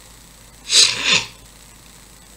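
A man sneezing once, a short explosive burst lasting about half a second, a little under a second in.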